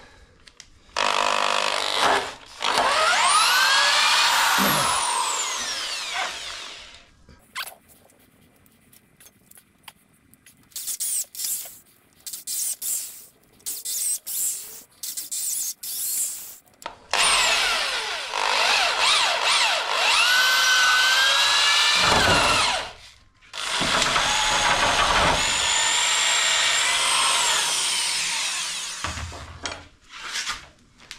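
Corded electric drill boring deep into the edge of a hardwood slab. It runs in several long stretches, with its whine rising and falling as the motor loads up and spins down, and in a string of short stop-start trigger bursts after a pause of a few seconds.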